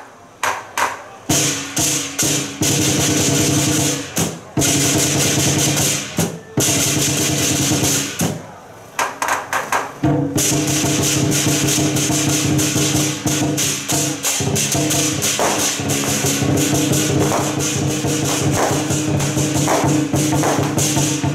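Lion dance percussion: a large drum beaten rapidly with crashing cymbals. The playing stops briefly a few times in the first half, with a few lone strokes in the gaps, then runs on without a break from about halfway.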